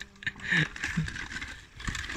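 Small children's bicycle rolling slowly over a dirt track, with light rattles and tyre noise, and two short soft sounds about half a second and a second in.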